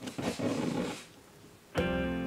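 A soft rustle of a sheet of paper being laid onto a marbling bath, lasting about a second. Near the end, background guitar music starts.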